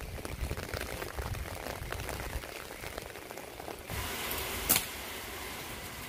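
Rain falling with a steady hiss, brighter in the last couple of seconds, with one sharp click a little before the end.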